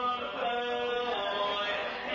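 Four male voices singing a cappella in close barbershop harmony, holding chords that change every half second or so.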